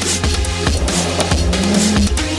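Electronic drum-and-bass music with a heavy, steady bass and a fast, regular drum beat; a held rising tone comes in over it in the second half.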